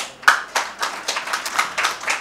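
A congregation clapping in quick, irregular hand claps, several a second.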